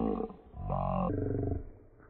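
A heavily distorted, pitched-down voice that comes out as two roar-like bursts. About halfway through it turns suddenly more muffled as the treble is cut away, and it fades near the end.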